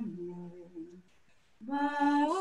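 Women singing unaccompanied over a Zoom call. A soft, low held note fades away in the first second, there is a brief pause, and then the voices come back in full near the end.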